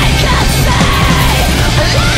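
Post-hardcore band recording playing: loud, dense distorted rock with yelled vocals.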